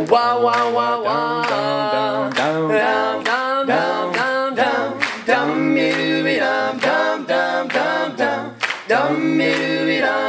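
Male a cappella group singing a doo-wop intro in close harmony on nonsense syllables ('dum, down, down, down'), the bass line and backing voices moving together. Sharp hand claps keep a steady beat about twice a second.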